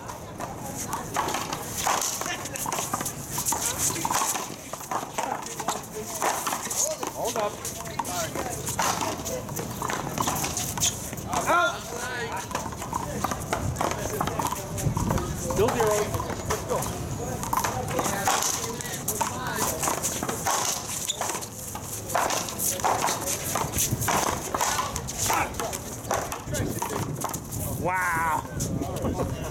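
One-wall paddleball rally: a rubber ball repeatedly smacked by paddles and off a concrete wall, making sharp hits that come again and again throughout, with spectators talking.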